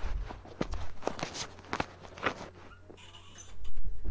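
Footsteps on a hard floor: a run of separate knocks over the first two seconds or so, then a rustle and a louder thump near the end.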